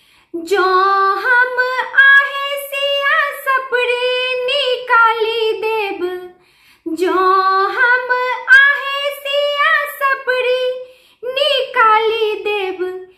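A woman singing a traditional Maithili Gauri geet (folk song) unaccompanied, in long held melodic phrases with short breath pauses about six and eleven seconds in.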